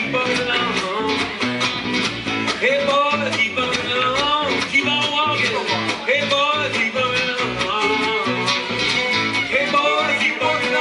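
Live acoustic folk trio music: a bowed fiddle plays a sliding melody over strummed acoustic guitar and plucked bass in a steady rhythm.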